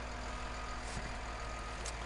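Bulldozer's diesel engine idling steadily, heard from inside the cab as a low hum.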